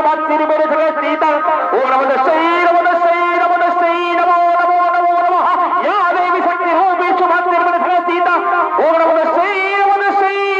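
Shehnai, the double-reed wind instrument of Chhau accompaniment, playing a melody of long held notes with sliding, wavering ornaments and no drums under it.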